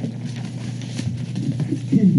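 Meeting-room background during a lull: a steady low hum with a light click about halfway through and faint murmured voices near the end.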